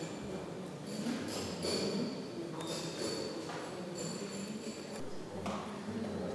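Indistinct murmur of visitors' voices echoing in a large stone church, with a few sharp knocks and faint high ringing tones.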